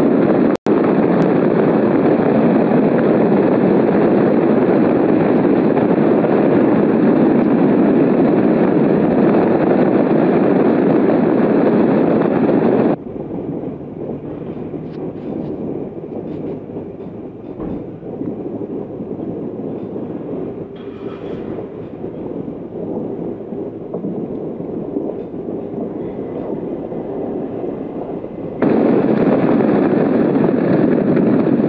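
Loud, steady wind rushing over the microphone of a camera mounted on a flying hang glider's wing. It drops abruptly to a lower level about 13 seconds in and jumps back up just as abruptly shortly before the end, with a split-second cut-out near the start.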